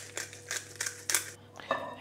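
Hand pepper mill being twisted to grind pepper, a quick run of short crunching clicks that stops about a second and a half in.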